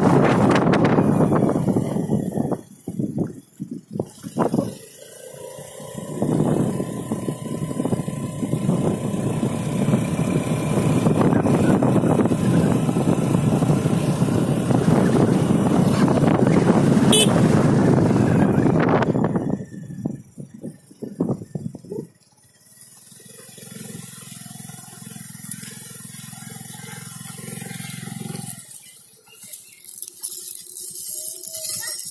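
Wind rushing over the microphone of a moving two-wheeler, with its engine running underneath. The wind falters twice early on and dies away about two-thirds through, leaving a quieter, steady low engine drone.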